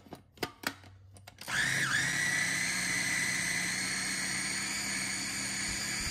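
A few light clicks, then about a second and a half in an electric food processor's motor starts and runs steadily with a high whine, its blades chopping soaked chickpeas with parsley, onion and garlic into falafel mix. Its pitch dips briefly just after starting, then holds.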